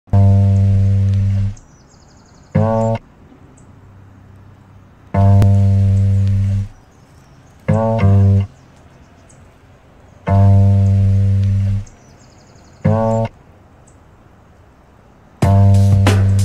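Background music: a low sustained note of about a second and a half followed by a short note, the phrase repeating about every five seconds with quiet gaps between. Percussion hits come in near the end.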